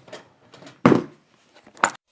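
Hard objects handled and set down on a table: a dull knock about a second in, then a sharper metallic clink near the end, with light rustling between.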